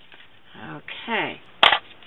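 A bone folder set down on a scoring board: one sharp clack about one and a half seconds in, the loudest sound here.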